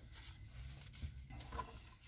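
Faint rustling and a few light ticks of Pokémon trading cards being handled, over a low steady hum inside a car.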